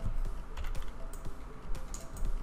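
Computer keyboard and mouse clicks, several short, sharp clicks at irregular spacing.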